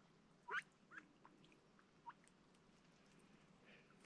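A few brief, soft duck calls over near silence, the loudest about half a second in and fainter ones over the next couple of seconds.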